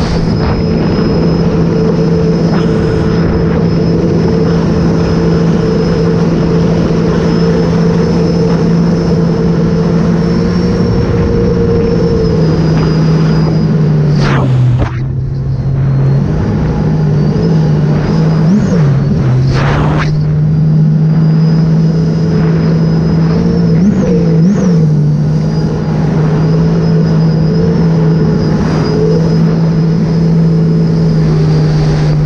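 Sea-Doo RXP-X 300 personal watercraft, with its supercharged three-cylinder Rotax engine breathing through a Riva Racing free-flow exhaust, running at steady high speed. Its note drops briefly about halfway through as the throttle is eased, then climbs back to the same steady pitch.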